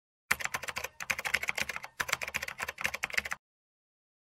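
Typing sound effect: rapid key clicks in three quick runs with short pauses between them, stopping about three and a half seconds in.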